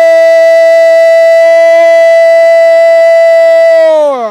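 Radio football commentator's long, loud held cry of "gol", sustained on one steady high note and starting to slide down in pitch at the very end as his breath runs out.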